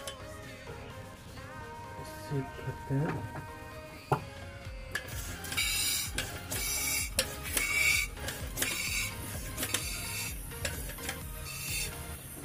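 Bicycle pump forcing air through a tyre valve into a water-filled plastic bottle rocket: a hiss with each stroke, roughly one a second, starting about halfway through. Faint music underneath.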